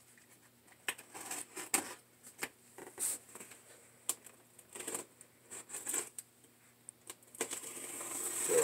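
Cardboard box being handled and opened by hand: scattered light taps, scrapes and rustles of cardboard.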